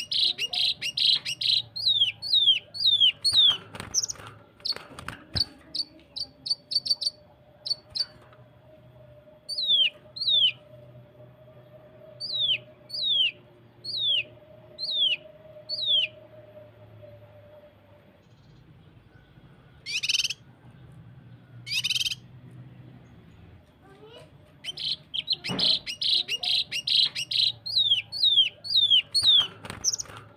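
Cucak kinoi leafbird singing rapid-fire runs of short, clear, downward-slurred whistles, dense at the start and near the end and more spaced in the middle: the 'tembakan rapat' (tight shots) phrasing used as a master song for training other birds. Two short harsh rasping bursts break in about two-thirds of the way through.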